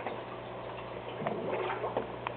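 Aquarium power filter running: a steady low hum under water bubbling and trickling, with a few small clicks.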